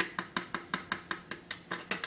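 Spoon stirring a drink in a cup, clinking against the side in an even rhythm of about five to six strikes a second.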